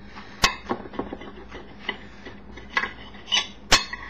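Table knife cutting through a toasted grilled cheese sandwich on a plate, with a series of sharp clicks and scrapes as the blade crunches the crust and strikes the plate; the loudest click comes near the end.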